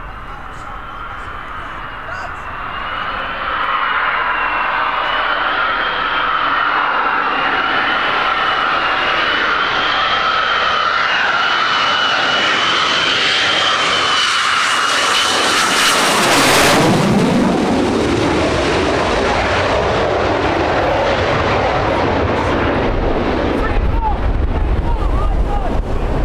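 Lockheed Martin F-22 Raptor on landing approach, its twin turbofans giving a high, wavering whine that grows steadily louder as it closes in. About sixteen seconds in it passes overhead with a loud rushing roar and a swooshing sweep down and back up in pitch, and the roar carries on as it moves away toward the runway.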